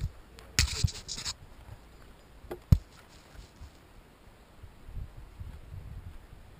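Scratching and rustling handling noise close to the microphone. A single sharp knock comes a little under three seconds in, and low wind rumbles on the mic near the end.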